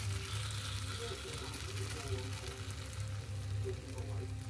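A stir-fry of green beans, glass noodles and fried tofu sizzling steadily in a nonstick wok, with a steady low hum underneath.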